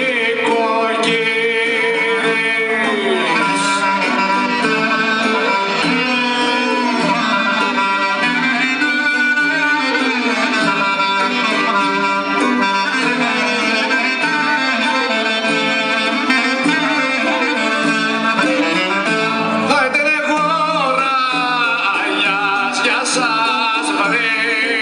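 Live Greek folk music for a Thessalian dance: a clarinet-led band with plucked-string accompaniment and singing, playing without pause.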